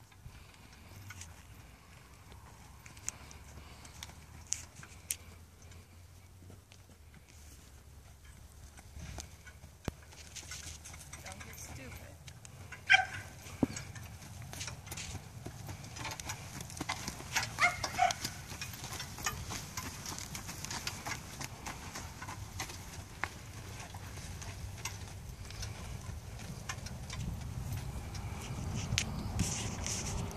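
A horse pulling a two-wheeled cart over a dirt arena: faint scattered hoof clicks with the cart's rattle, and a low rumble that grows louder toward the end. A few short voice-like calls come about halfway through.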